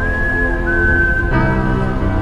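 Slow ambient keyboard music: sustained chords with a high, pure held note on top that steps down in pitch about half a second in. The chord underneath changes near the end.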